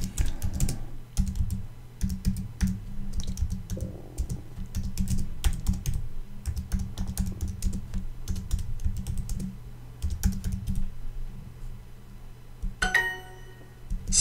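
Typing on a computer keyboard: a run of quick key clicks for about eleven seconds. Near the end comes a short chime, the language app's sound for an accepted answer.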